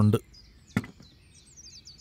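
A single short knock about three-quarters of a second in, followed near the end by a run of faint, high bird chirps.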